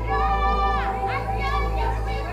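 Several people's voices talking and calling out over one another, one voice sliding down in pitch about a second in, over a music bed of held notes and a low drone.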